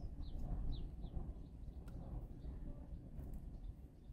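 A small bird chirping a few short falling notes in the first second, over a steady low rumble of street traffic.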